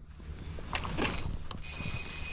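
Spinning reel's drag giving line with a ratcheting click, turning into a steady high buzz about a second and a half in as a large trout pulls away.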